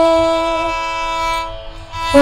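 A female Carnatic vocalist holds one long, steady note at the end of a phrase, and it fades away about a second and a half in.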